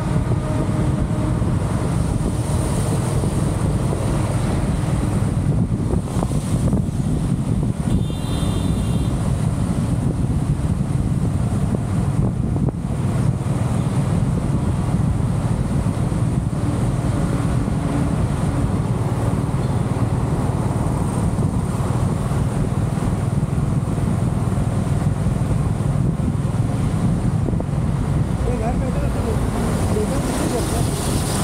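Steady wind buffeting the microphone of a camera on a vehicle moving at highway speed, with road and traffic noise underneath. A brief high beep sounds about eight seconds in.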